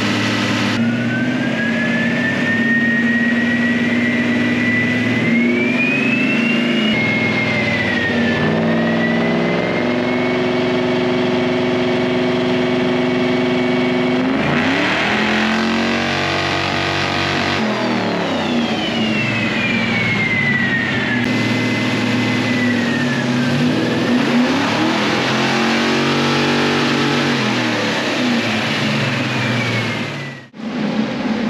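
543 cubic-inch big-block V8 of a Plymouth Superbird running on a chassis dyno under throttle. The revs climb steadily over the first several seconds, then fall and rise again several times in the second half, with a whine following the engine speed. The tuner afterwards reads the run as too rich at the top end, with the engine not breathing at high revs.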